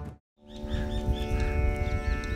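Intro theme music cuts off abruptly. After a brief silence, birds chirp repeatedly over a steady, unchanging drone with many overtones.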